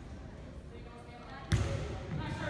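A volleyball smacked once, sharp and loud about a second and a half in, echoing around a gymnasium after a low murmur of voices.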